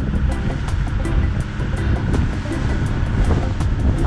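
Steady low rumble of a boat under way at sea, with wind buffeting the microphone and water rushing past. Music with a quick ticking beat, about five ticks a second, plays along with it.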